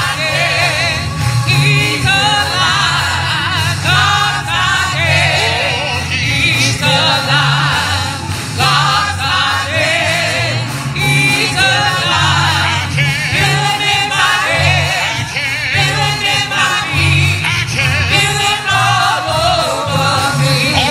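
Gospel music in a church: voices singing with heavy vibrato over a pulsing bass accompaniment.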